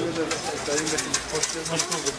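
Indistinct voices of several people talking at an open-air market stall, with no clear words, over the general bustle of the market.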